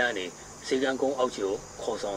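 A man speaking in short phrases, with a faint steady high hiss beneath.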